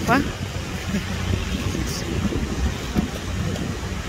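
Steady low rumble of wind and ocean surf on an exposed sea cliff, with a woman's brief exclamation at the very start.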